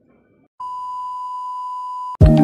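Test-card tone of a 'Please Stand By' screen: one steady beep at a single fixed pitch, starting abruptly about half a second in.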